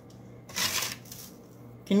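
Dried coarse sea salt with orange zest and herbs being scooped with a metal spatula and tipped into a plastic funnel over a small glass jar: a short rustle about half a second in.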